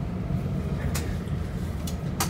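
Steady low rumble of a Dutch Sprinter commuter train heard from inside the carriage as it runs, with a couple of faint clicks.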